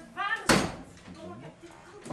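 The lid of a storage trunk slammed shut once, about half a second in, a sharp bang that rings out briefly; a short vocal sound just before it.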